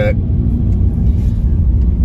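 Steady low rumble of a van's engine and road noise, heard from inside the cabin while it drives.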